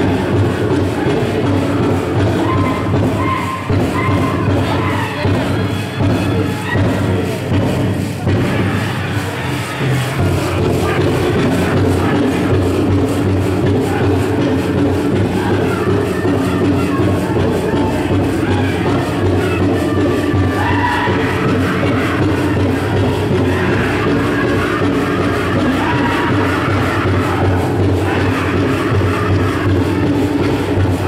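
Powwow drum group singing a jingle dress song over a steady, even drumbeat, with high-pitched lead voices. The metal cones on the dancers' jingle dresses rattle, and a crowd is heard in the arena.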